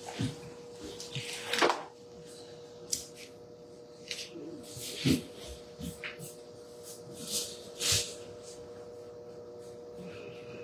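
Paper pages of Bibles being leafed through and rustled, with a few small knocks and shuffles at the table, over a faint steady hum.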